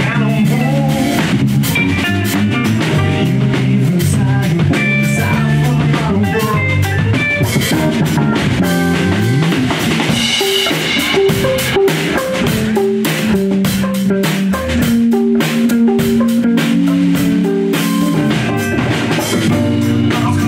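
Live rock band playing: electric guitars, bass guitar and drum kit.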